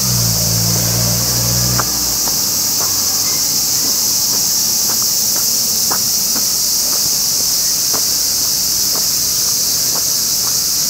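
Loud, steady high-pitched drone of cicadas in the trees. Faint footsteps tick beneath it about once or twice a second, and a low hum stops about two seconds in.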